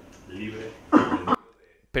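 A person clears their throat and then gives a short, loud cough about a second in. Right after the cough the sound cuts off abruptly into near silence.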